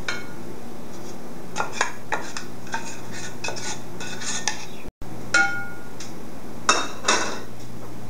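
Stainless steel saucepan clinking and tapping against a ceramic mixing bowl while a wooden spoon scrapes melted butter and brown sugar out of it. The sound is a scattered series of short knocks, a few with a brief metallic ring, the loudest in the second half, with a short break in the sound about halfway through.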